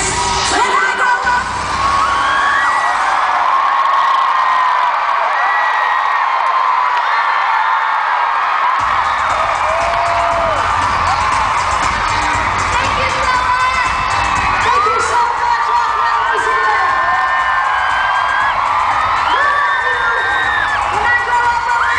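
Arena crowd screaming and cheering over live pop music. The bass of the music drops out for several seconds and returns about nine seconds in.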